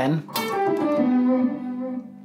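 Electric guitar playing a short descending pentatonic run of single notes across the G, D and A strings, ending on a held low note.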